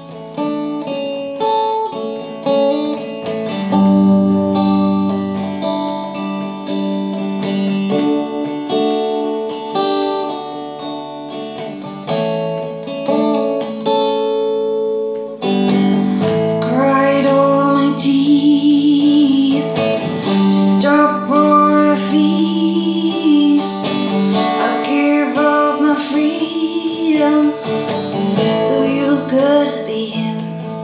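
Slow song on a hollow-body electric guitar: sustained, ringing chords and notes alone for the first half, then a woman starts singing over the guitar about halfway in and carries on to the end.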